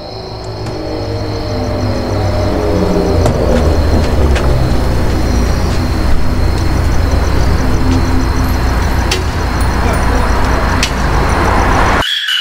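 A low car-engine rumble swells in loudness over a steady high chirping of crickets, with a few sharp clicks. This is a music-video soundtrack's sound design, and it cuts off abruptly at the end.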